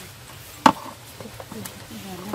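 A single sharp knock about two-thirds of a second in.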